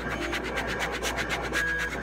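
Plastic vinyl-application squeegee rubbing and scraping over vinyl lettering on a sign, in quick short strokes, pressing the stick-on numbers down.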